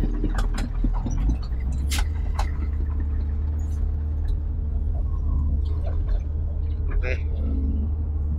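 Doosan DX wheeled excavator's diesel engine working under load, heard from inside the cab as a steady low drone, with a few sharp clacks in the first two and a half seconds.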